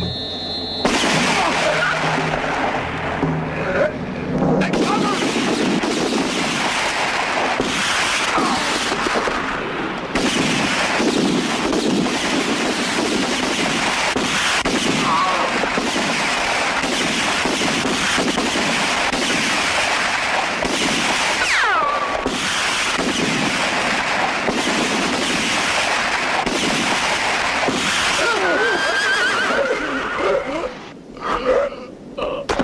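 A shootout: dense, sustained gunfire mixed with men shouting and horses whinnying, loud and continuous from about a second in.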